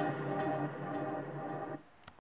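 The closing bars of a pop song played through a JBL Flip 5 portable speaker: held chords with a few light ticks. The music cuts off suddenly near the end.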